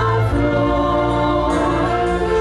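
Concert wind band of brass and woodwinds, tuba and euphonium among them, playing slow held chords that change about a third of a second in.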